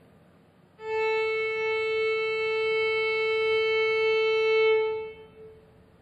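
A single bowed violin note, held steady for about four seconds: it starts about a second in and fades away shortly before the end.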